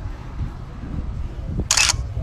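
A camera-shutter sound effect: one short, sharp shutter click near the end, over a steady low background rumble.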